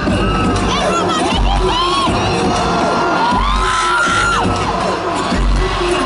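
Concert crowd of fans screaming and cheering, with single high-pitched screams rising and falling close by, over dance music with a deep bass hit about every two seconds.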